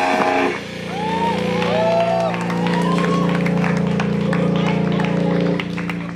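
Amplified electric guitars and bass letting a final rock chord ring out after the last hit, held steady and then dying away near the end.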